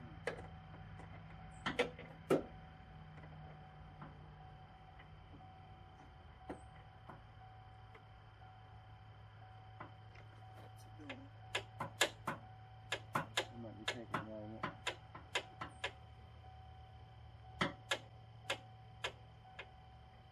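Headlight aim adjuster being turned with a ratcheting headlight adjustment tool: a run of sharp, irregular clicks, a few at first and then many in quick succession about halfway through, over a steady low hum.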